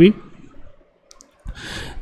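A pause in a man's speech: two faint clicks about a second in, then a short breath drawn in just before he speaks again.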